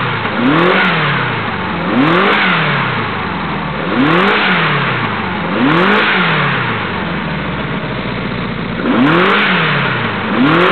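Renault 5 Alpine four-cylinder engine blipped by hand at the carburettor throttle linkage. It revs up and drops back to idle five times, with a longer stretch of idle before the last blip.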